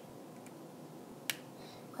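Quiet room tone with one sharp click a little over a second in, from plastic Lego pieces being handled.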